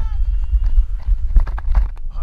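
Quick footfalls of a player running on grass, picked up by a body-worn camera, under a heavy low rumble of wind and jostling on the microphone. A long shouted call carries over the first moment, and a cluster of sharp knocks lands about a second and a half in.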